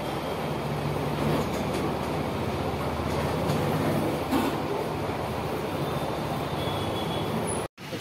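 Steady low machine hum and noise, running evenly with no words over it. It cuts out abruptly for a moment near the end.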